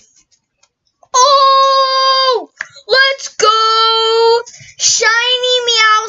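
A boy singing a few long held notes, wordless and loud, after a second of quiet; the last note bends up and then falls away.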